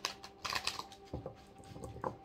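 A tarot deck being shuffled by hand: irregular soft clicks and taps of cards against each other.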